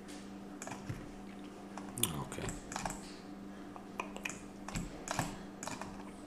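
Computer keyboard and mouse clicks, about a dozen short clicks at uneven intervals, over a faint steady hum.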